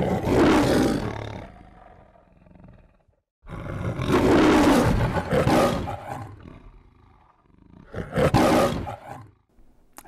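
A lion roaring three times, as in the MGM studio logo roar. The second roar is the longest and the third is short.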